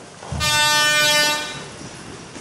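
A single horn-like toot: one steady pitched tone starting with a low thump about a third of a second in, held for about a second and then fading away.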